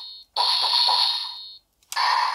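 The DX Venomix Shooter toy's small speaker plays a high-pitched electronic sound effect for its Cicada Blade mode. It cuts off briefly a little way in, then sounds again for about a second. A sharp click comes near the end as the front dial is turned.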